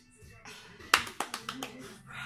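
A short run of hand claps, about five quick claps with the first the loudest, starting about halfway through.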